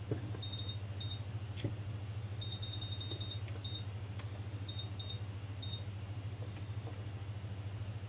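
Short high-pitched key beeps from a printer's control panel as its buttons are pressed to step through the setup menus: single beeps and pairs, with a fast run of beeps a little after two seconds in. A low steady hum runs underneath.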